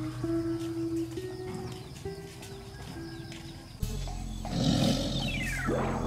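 Background music with held tones, then about two-thirds of the way in a tiger roar sound effect comes in suddenly and loudly, followed by a sound whose pitch falls steeply over about a second.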